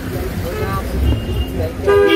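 Busy street traffic: engine rumble and people talking, with a vehicle horn tooting briefly near the end.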